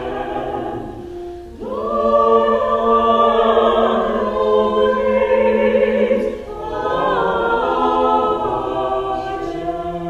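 Small church choir of four voices singing in harmony, led by a conductor. After a brief dip about a second and a half in, the voices hold a long chord, then break off near six and a half seconds and begin a new phrase.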